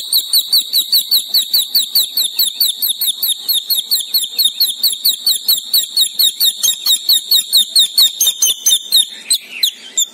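High-pitched bird chirping: a fast, very even series of about five chirps a second over a steady thin whistle, fading out about nine seconds in.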